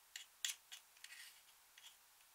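Metal-tipped tool scraping and picking at a pressed glitter eyeshadow in a plastic compact, breaking it up: a handful of short, crisp scratches and clicks, the loudest about half a second in.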